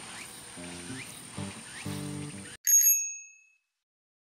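A hose spray nozzle hissing under soft background music, then a single bright bell-like chime about two and a half seconds in that rings out and fades to silence.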